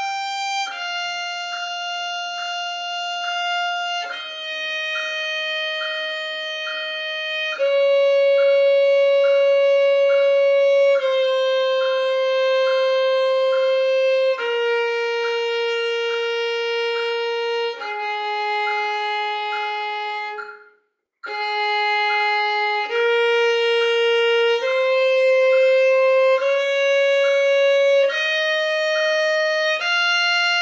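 Solo violin playing long bowed notes in a slow scale, stepping down one note about every three and a half seconds. It stops briefly about two-thirds through, then climbs back up in shorter notes.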